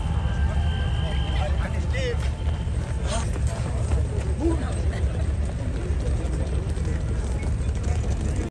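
Indistinct chatter from a crowd of people walking past, over a steady low rumble, with a brief chirp about two seconds in and a sharp click a second later.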